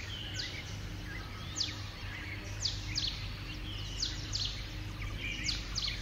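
Small birds chirping: short, quick downward-sweeping chirps about once a second, over a steady low hum.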